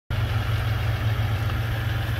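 Vehicle engine idling: a steady low hum.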